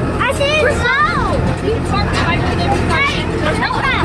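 Farm tractor engine running steadily as it tows a passenger wagon, with people talking over it.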